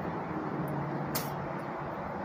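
A vehicle running steadily, with a short hiss just past a second in.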